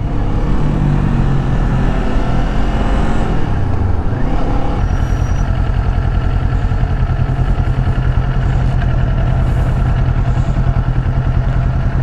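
Kawasaki Z400 parallel-twin engine, its revs falling over the first few seconds as the motorcycle slows, then running steadily at low revs.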